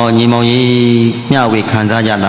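A Buddhist monk's voice reciting in a level, drawn-out chanting tone over a microphone, one long held syllable and then another after a short break.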